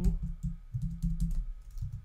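Typing on a computer keyboard: a quick, irregular run of keystrokes.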